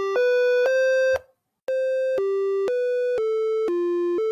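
Intro jingle: a simple electronic melody of plain, steady beeping notes, about two a second, stepping up and down in pitch. It breaks off briefly just over a second in, then carries on.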